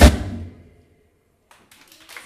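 A live band's closing accent, led by the drum kit, ends the song with one loud hit that dies away within about half a second. After a moment of near silence, faint scattered claps begin near the end.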